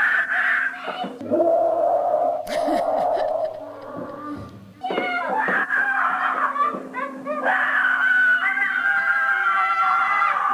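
Young children screaming and shrieking with excitement over a gift, their voices high and strained. The shrieking eases for a moment around the middle, then rises into one long held squeal near the end, heard as playback of a home video.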